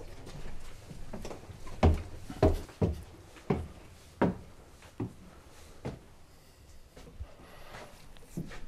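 Footsteps climbing a wooden staircase: about seven heavy treads, one every half second to a second, growing fainter toward the end.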